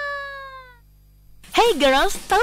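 Broadcast audio: a held pitched note slides slowly down in pitch and fades out. After a short gap, a swooping, rising-and-falling voice-like call opens a radio advertisement.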